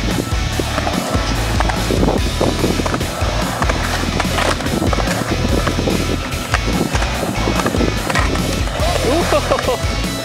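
Skateboard wheels rolling and carving around the walls of a concrete bowl: a steady rumble broken by short clacks of the board.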